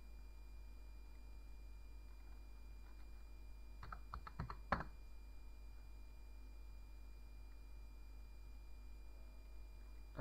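A quick run of about six computer keyboard keystrokes lasting under a second, about four seconds in, the last one the loudest. Otherwise a quiet room with a steady low electrical hum.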